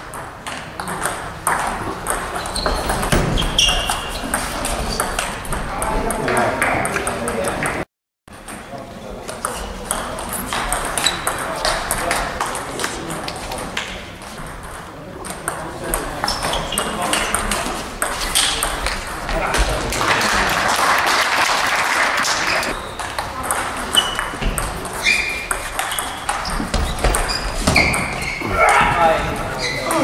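Table tennis doubles rallies: the celluloid-type ball clicking back and forth off rubber-faced bats and the table, many quick hits in a row, with a short total drop-out about eight seconds in.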